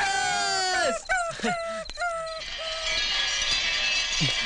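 A dog whining in a series of short, high-pitched falling whimpers, stopping about three seconds in. Crickets chirr faintly in the background over the second half.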